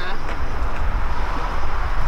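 Outdoor street noise with a heavy low rumble and indistinct voices.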